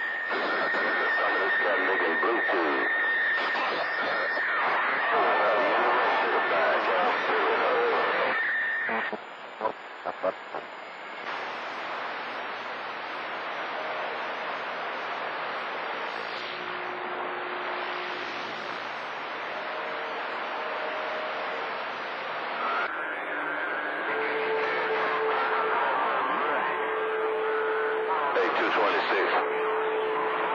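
CB radio receiving skip on channel 28: static and hiss with distant voices coming through garbled and overlapping. A steady high whistle from beating carriers runs through the first nine seconds; the signal then drops to quieter hiss with a few short pops, and lower whistles come and go over the voices later.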